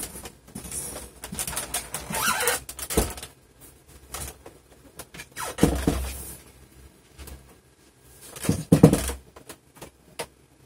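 Handling noise: irregular rustles and scrapes as a power cable is handled and the camera is moved, with a sharp knock about three seconds in and louder bursts of rubbing near six and nine seconds.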